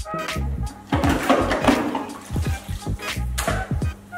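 Background music with a steady low beat. About a second in, a rushing, water-like noise rises over it for about a second.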